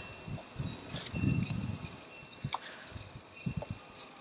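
Pages of a paper colouring book being turned and handled, with a few soft knocks, while faint high ringing tones come and go in the background.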